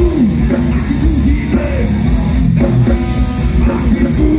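Heavy metal band playing live, with distorted electric guitars, bass and drums, loud and unbroken, recorded from the audience.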